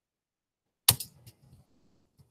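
A sharp click close to the microphone about a second in, followed by a few fainter clicks and light rattles.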